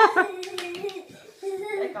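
A young child's voice humming a held, wavering tune, broken by a few short sharp slaps about half a second in, then speaking near the end.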